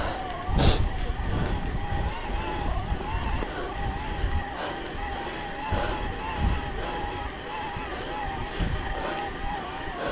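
Mountain bike rolling over a wet gravel track: tyre rumble and rattle, with wind on the camera microphone and a thin, wavering whine held steady throughout. There is one sharp knock about half a second in.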